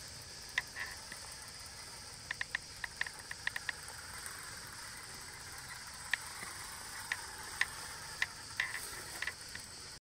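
Irregular light clicks and ticks, some singly and some in quick runs of several, over a steady background chirring of crickets.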